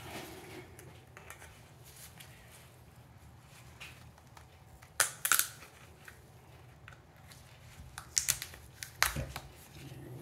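Cut-open oil filter's metal-capped element handled in gloved hands: quiet rubbing, then a few sharp clicks and knocks of metal parts, two close together about halfway through and more near the end.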